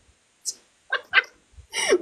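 A small dog yapping: two short, sharp barks in quick succession about a second in.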